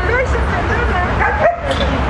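Dogs at play giving short, high yips and whines that rise and fall in pitch, over a steady low rumble.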